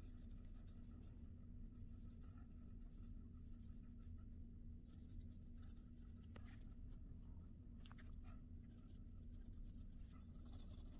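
Soft graphite pencil faintly scratching on watercolor paper in short, irregular strokes, darkening lines to raise the painting's contrast. A steady low hum sits underneath.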